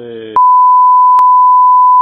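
A steady, pure 1 kHz censor bleep about a second and a half long, covering a word in a recorded phone call, with a short click in the middle.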